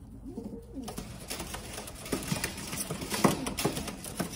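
Domestic pigeons cooing, with a run of sharp rustles and clicks starting about a second in, the loudest a little past three seconds.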